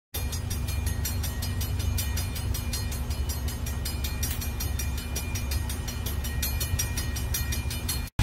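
Diesel freight locomotives passing: a steady low engine rumble with a rapid, regular clicking of about five clicks a second.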